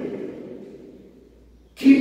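A man's voice, amplified in a reverberant church, trailing off after a phrase into a short near-quiet pause, then starting to speak again loudly near the end.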